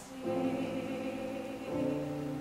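Grand piano playing sustained chords, a new chord struck about a quarter second in and another near the end, each fading away.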